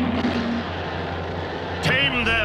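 Cartoon sound effect of a robot lion roaring: one long, rough roar, with a sudden sharp sound near the end.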